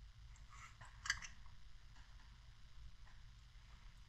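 Faint scraping and small clicks of a pick prying at the plastic housing of a rechargeable LED neck light, with one sharper click about a second in.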